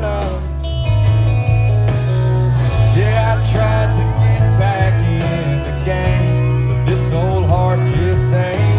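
A live country band playing with a singer, a heavy bass line under the vocal, heard from among the audience.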